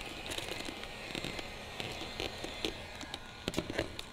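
Cast vinyl wrap film crackling and crinkling as it is stretched and worked by hand around a golf car's side panel, a run of sharp crackles that grows thicker near the end, over the steady hiss of a heat gun.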